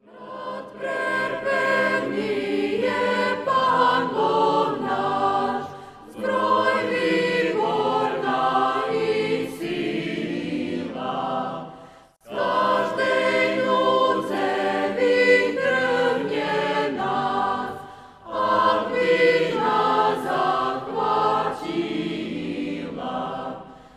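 Choir singing a church hymn in phrases of about six seconds, with short breaks between them.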